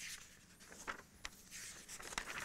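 Faint rustling of paper sheets as pages of printed notes are handled and turned, with a few small clicks.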